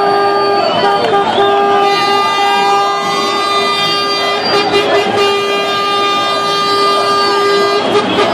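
A vehicle horn held in one long, steady blast, breaking off briefly about a second in and then sounding again almost to the end, over the voices of a celebrating street crowd.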